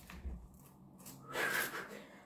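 A quiet room with one brief, soft paper rustle about one and a half seconds in, as a paper slip is taken from the wall.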